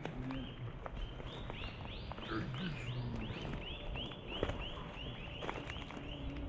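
An animal call repeated rapidly: short squeaky notes that each rise and fall, about three or four a second, running on without a break.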